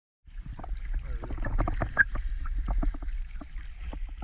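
Water sloshing and splashing against a camera held at the surface as scuba divers swim, with many small irregular splashes and knocks over a low rumble.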